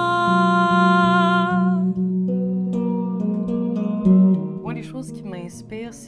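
A woman sings one long held note with vibrato over clean electric guitar, then the guitar's chords ring on alone for a few seconds. A wavering voice comes back briefly near the end.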